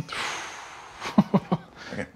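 A man's breathy exhale, followed about a second in by a few quick, short chuckles.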